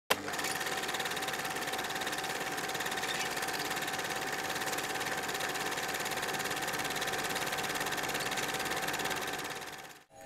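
Film projector running: a steady, rapid mechanical clatter with a steady hum, starting with a click and fading out near the end.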